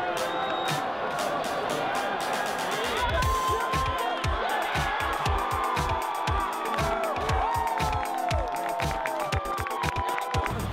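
Football stadium crowd cheering and yelling over music, with a steady drumbeat of about three strokes a second coming in about three seconds in.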